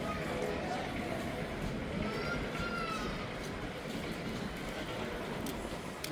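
Footsteps on stone paving with the noise of a busy pedestrian street and the voices of passers-by in the background.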